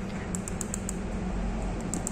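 Faint, quick clicks of a cockatiel's beak on the plastic ring hanging in its wire cage, about six in the first second and two more near the end, over a steady low hum.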